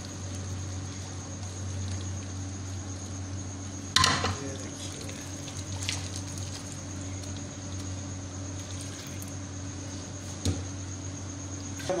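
Hot rice-cooking water pouring from a pot through a metal mesh strainer and draining into a steel sink. About four seconds in there is one sharp metallic clank with a short ring, and a few lighter clicks later.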